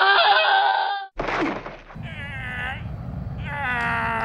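A man's voice crying out in long, wavering wails rather than words: a loud cry in the first second, then two drawn-out wails later on, over a steady low rumble.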